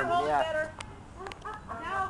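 A person's high, wavering laugh, then a few sharp clicks from the potato cannon's spark igniter being pressed just before it fires.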